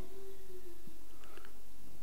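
A pause in speech filled by a steady low room hum, with a couple of faint small ticks a little over a second in.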